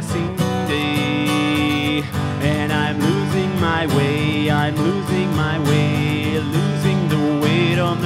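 Acoustic guitar strummed steadily in a gap between sung verses.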